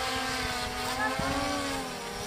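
Quadcopter drone's propellers whining overhead as it hovers and moves, several pitches wavering slowly up and down as the motors change speed.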